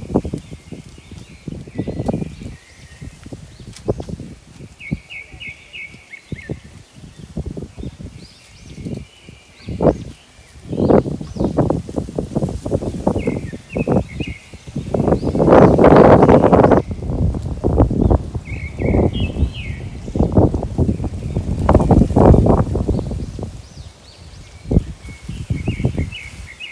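Wind rumbling on the microphone in uneven gusts, loudest around the middle, with short bird chirps at intervals.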